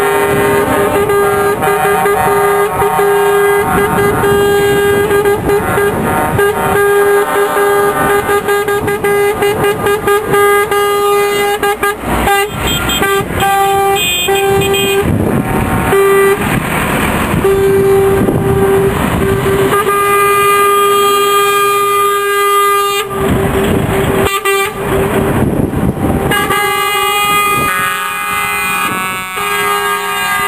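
Truck air horns sounding almost without pause on one steady pitch, broken briefly a few times, as a convoy of trucks drives past. The trucks' engine and tyre noise swells in two loud rushes as trucks pass close, once midway and again past two-thirds of the way through.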